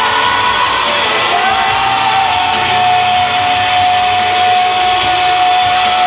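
Live boy-band pop music played loud through an arena PA, recorded from within the crowd, with fans shouting and cheering. About a second and a half in, a single high note starts and is held steady until the end.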